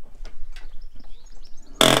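Irregular knocks and thuds, a few a second, from horse hooves moving on a horse trailer's floor. Near the end a loud spoken word cuts in over them.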